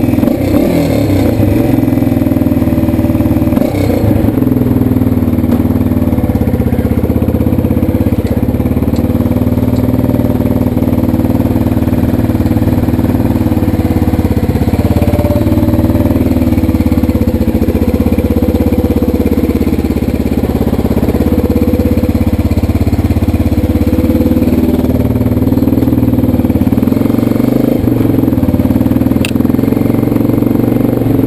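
2005 DS650X quad's single-cylinder four-stroke engine running steadily while the quad is ridden at low speed, its pitch rising and falling a little with the throttle.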